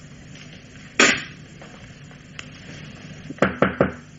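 Sound effects: a telephone receiver set down on its cradle with a clunk about a second in, then a quick run of about four knocks on a door near the end.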